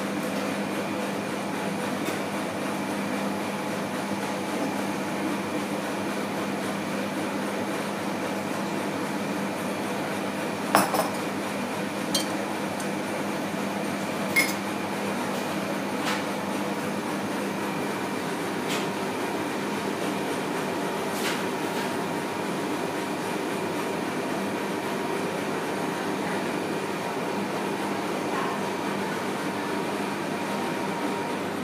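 Steady machine hum with a few sharp clinks of dishes and glassware, the loudest about eleven seconds in and others a few seconds later.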